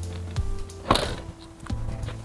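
Background music plays while a Mercedes-Benz van's tailgate is swung shut, closing with a single sharp thud about a second in.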